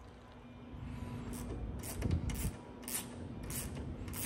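A few faint, light clicks and knocks of hand tools and hardware being handled, over a low steady background hum.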